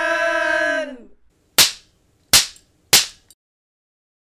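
A held musical tone that dips slightly in pitch and stops about a second in, followed by three sharp hits spaced a little under a second apart, each dying away quickly.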